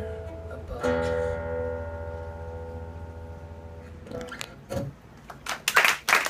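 Acoustic guitar strummed once more about a second in, the chord ringing out and slowly fading as the song ends. A few scattered claps follow, and applause breaks out near the end.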